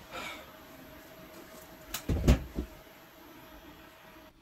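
Three quick soft knocks on the table about two seconds in, the middle one the loudest and deepest, from hands handling things at the table, after a brief rustle at the start; a faint steady hum underneath.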